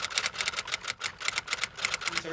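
Typewriter sound effect: a quick run of sharp key clacks, about eight a second.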